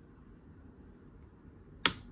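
A single sharp click near the end as the Power Designs TW5005 power supply's front-panel toggle switch is flipped, with the unit not coming on: it seems absolutely dead.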